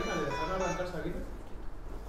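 Indistinct speech that trails off after about a second, leaving low room noise with a steady hum.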